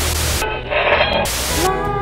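A loud burst of static-like hiss used as a transition effect between music, its hiss dulling for a moment in the middle; music with long held tones comes back in near the end.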